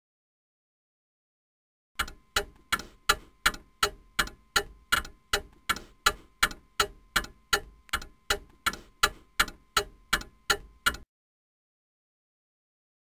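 Clock ticking sound effect: evenly spaced sharp ticks, nearly three a second, starting about two seconds in and cutting off suddenly about a second before the end.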